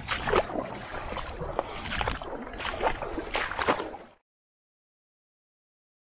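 River water sloshing at the bank, with irregular rustling. The sound cuts off to dead silence a little after four seconds in.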